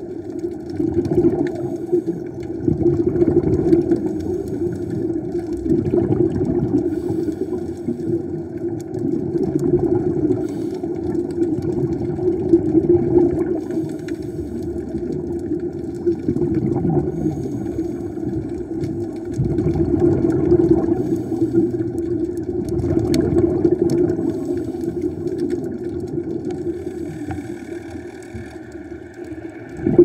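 Muffled underwater sound picked up by a submerged camera: a steady low hum that swells and fades every few seconds, with little high-pitched sound.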